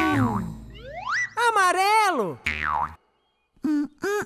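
Cartoon sound effects: a springy rising pitch glide, a wavering voice-like warble, and a falling glide, then after a brief silence a few short wordless syllables from a cartoon character.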